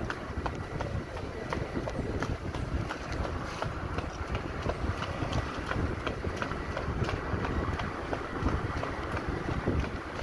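Bare feet slapping quickly on asphalt as two runners sprint, the footfalls coming as rapid uneven taps over a steady low rumble of wind on the microphone.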